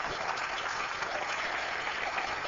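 Congregation applauding: a steady spatter of clapping in a large hall.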